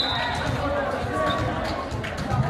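A volleyball thudding a few times on a gym's hardwood floor or off a player's hands, amid the chatter of a crowd in the gym.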